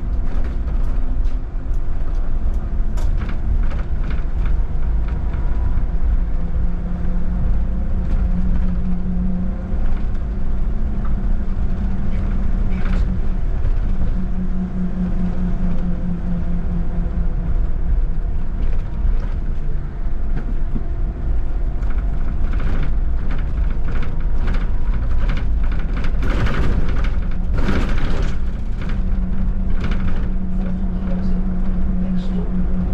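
VDL Citea electric city bus driving, heard from inside: a steady low road and tyre rumble with humming tones that swell and fade as it moves. Near the end comes a brief louder rush of noise.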